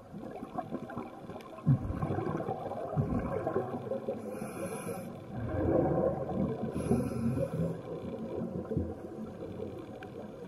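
A scuba diver breathing underwater through a regulator: bursts of bubbling exhaled breath, loudest about two seconds in and again around six seconds, with two short hissing inhalations in between.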